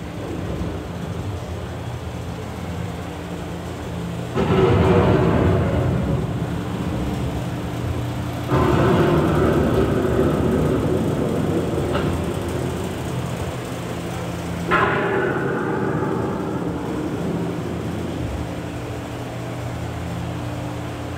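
Thunder sound effects played over the ride's speakers in a storm scene: three sudden claps, about four, eight and fifteen seconds in, each rumbling away over several seconds, above a steady low hum.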